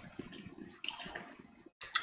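Faint, irregular puffing and drawing on a tobacco pipe as it is relit with a lighter flame held to the bowl.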